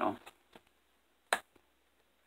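A single sharp click as a magnetized cardstock flap on a scrapbook page snaps shut, with a faint tick shortly before it.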